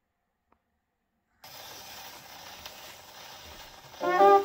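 A faint click, then about a second and a half in the needle of an acoustic gramophone's reproducer sets down on a spinning 78 rpm shellac record and the steady hiss and crackle of surface noise from the lead-in groove begins, before the music starts.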